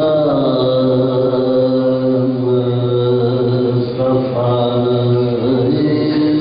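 Men's voices reciting a marsia in soazkhwani chant, holding long notes that shift slowly in pitch, with a new phrase starting about four seconds in.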